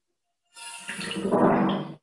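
Water splashing on a nature documentary's soundtrack, played through classroom speakers; it comes in about half a second in after a dead-silent gap and grows louder.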